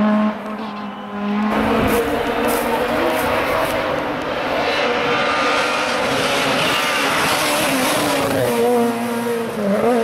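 Rally car engine at high revs passing close at speed, with heavy tyre and road noise. Near the end the engine pitch falls and rises again as it lifts off and accelerates.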